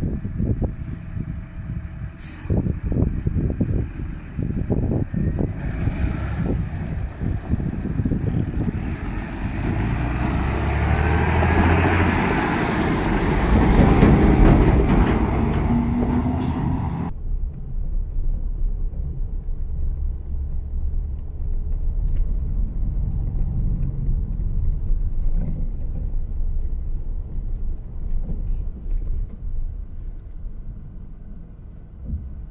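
Farm tractor pulling a grain trailer along a gravel road, its engine growing louder to a peak and rising in pitch before it cuts off abruptly. After that, a steady low rumble of a car driving behind it, heard from inside the car.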